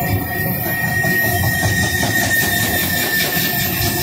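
Loaded freight wagons of a eucalyptus-log train rolling past with a continuous low rumble. A steady high-pitched tone rides over it, strongest through the middle.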